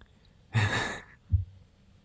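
A person's breathy exhale, a sigh-like laughing breath about half a second in, followed by a short soft low thump.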